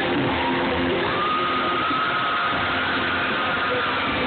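Live rock band playing, heard loud and harsh through a phone's microphone in the hall, with a long held high note that comes in about a second in.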